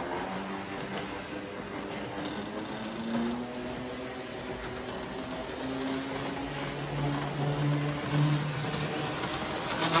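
Standard gauge Waterman Burlington Zephyr model train running on three-rail tinplate track: a steady electric motor hum whose pitch wanders, over the rolling of its wheels. Near the end it gets louder, with rapid clicking as it passes close.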